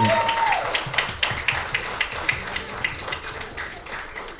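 Applause: many people clapping, fading gradually toward the end.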